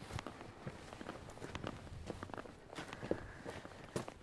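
Footsteps of a person walking, a string of irregular steps.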